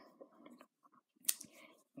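Faint handling sounds of crocheting: a metal crochet hook drawing double knit wool through a double crochet stitch, soft rustles and one sharp click a little past the middle.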